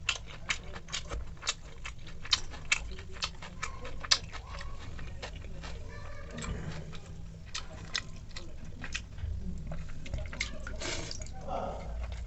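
Close-up eating sounds: quick, sharp mouth clicks of chewing. About halfway through, a hand squishes and stirs watery fermented rice (pakhala) in a steel bowl.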